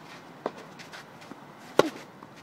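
A tennis ball being hit during a rally on a clay court. There is a fainter knock about half a second in, then a sharp, loud racket strike near the end.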